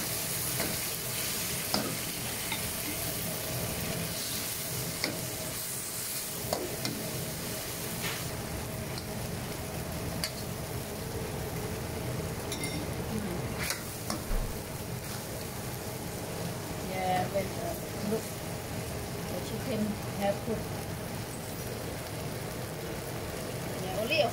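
Chicken sizzling as it is stir-fried in an aluminium wok, with a steel ladle stirring it and now and then scraping or knocking against the pan.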